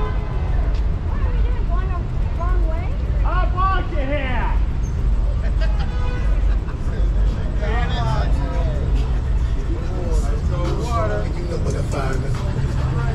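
Indistinct voices of people talking on the street corner, in two stretches, over a steady low rumble of city traffic.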